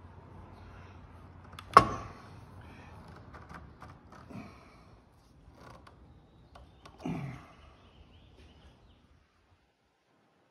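Wooden hand-screw clamps being set and tightened on a wooden oar blank. There is a sharp wooden knock about two seconds in and another about seven seconds in, with small clicks and rubbing of the clamp handles between them.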